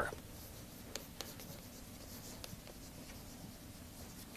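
Chalk writing on a chalkboard: faint scratching with a few light ticks as the chalk strikes the board.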